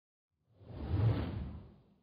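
Whoosh sound effect for an animated news logo transition, swelling in about half a second in, peaking just after a second and fading away.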